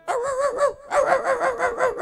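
A man's voice through a microphone imitating a dog: a short wavering whine, then a quick run of yelps, several a second, in the second half.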